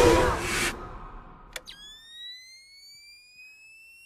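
Film trailer sound effects: a loud noisy rush that cuts off under a second in, then a sharp click and a thin electronic whine that rises slowly in pitch.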